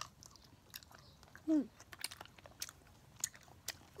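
Children chewing gummy candy with the mouth close to the microphone: quiet, scattered wet clicks and smacks.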